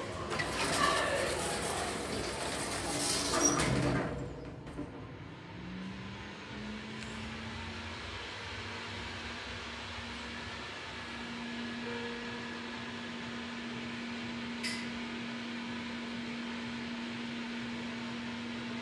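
Schindler lift: the doors slide shut over background bustle in the first few seconds. Then a steady, low drive hum starts, steps slightly up in pitch and holds while the car travels. There is a single click near the end.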